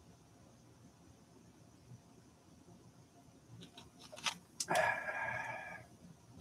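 Mostly quiet room tone; about four seconds in, a few sharp clicks, then a slurping sip of a drink lasting about a second.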